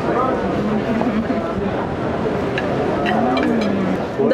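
Indistinct voices over a steady, dense low rumble of background noise.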